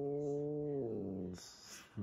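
A domestic cat growling: one long, low, drawn-out growl that rises slightly and then fades, followed by a short hiss near the end. It is an angry warning aimed at another cat in the house.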